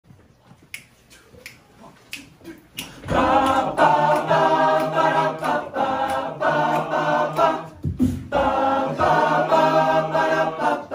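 Finger snaps keep a steady beat, about one every 0.7 seconds. About three seconds in, an all-male a cappella group comes in singing in close harmony over a sustained bass line, then breaks off briefly near the end before going on.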